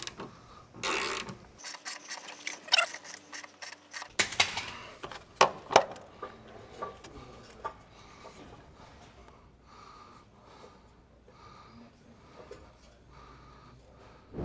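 Ratchet wrench with a twist socket clicking as it works a rusted, rounded-off 13 mm exhaust hanger nut loose, with metal knocks and clanks. The clicking is busiest over the first six seconds, then gives way to fainter, scattered handling sounds.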